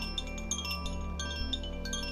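Handheld bamboo-cased wind chime of the Koshi kind, swung so its inner rods strike repeatedly and ring in many overlapping, sustained bell-like notes.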